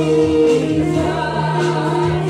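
Church worship team and congregation singing a gospel worship song together, with a steady held low accompaniment note beneath the voices.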